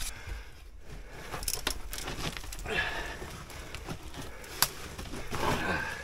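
Scuffing and rustling of clothing and gear against rock as a person crawls through a tight mine passage, with a few sharp knocks along the way and two longer rustles, about halfway through and near the end.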